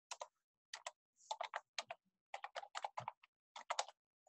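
Faint typing on a computer keyboard: short runs of irregular key clicks with brief pauses between them.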